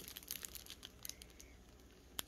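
Faint crinkling of clear plastic zip bags of diamond painting drills being handled: scattered light crackles, thinning out after the first half second.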